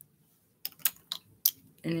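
About four sharp plastic clicks and taps from small lip-gloss containers being handled close to the microphone. A voice starts near the end.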